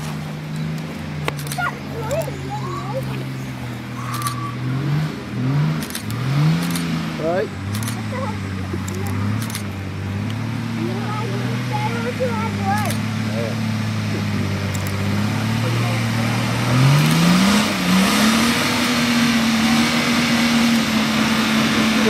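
Nissan Patrol 4x4's engine working under load as it crawls up a rutted rocky track, with a few quick blips of revs early on and a rise to higher revs, held, about 17 seconds in. Scattered sharp clicks of stones under the tyres.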